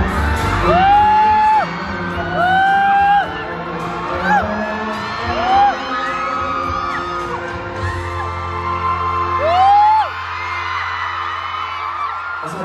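Closing bars of a live pop song: a band playing under about five high vocal notes that each glide up and are held for up to a second. The band's low notes fade out near the end.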